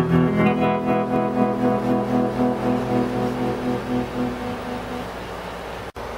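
Electric guitar chord ringing out through a homemade electro-mechanical tremolo into a small tube amp (a hand-built clone of the Fender Princeton 5F2-A with a Jensen C10N speaker). The volume throbs about twice a second as the chord slowly decays and fades out.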